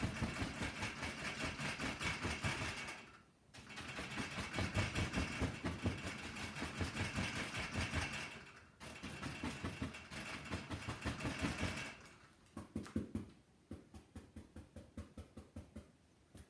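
A paintbrush tapping rapidly against a stretched canvas as oil paint is dabbed in wet-on-wet, the taut canvas answering each tap. The tapping comes in three long runs with brief pauses between them, then thins to lighter, scattered taps near the end.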